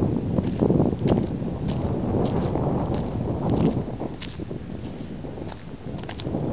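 Wind buffeting the microphone in gusts, loudest in the first four seconds, with scattered footsteps on dry, stony ground.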